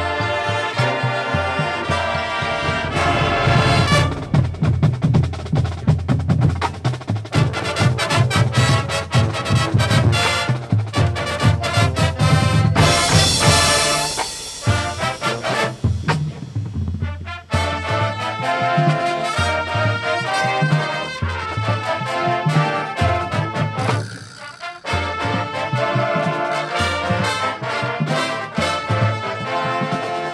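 High school marching band playing live: brass, woodwinds and percussion together, with drum hits under the brass and a couple of brief drops in loudness in the second half.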